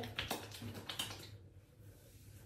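Wet hands rubbing leave-in conditioner between the palms: a few soft, quick clicks and squishes over the first second and a half, then fading to almost nothing.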